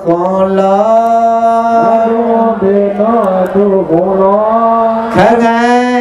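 A man's voice chanting a Buddhist dhamma text in Karen, in long held notes that glide from pitch to pitch with only brief breaths between phrases.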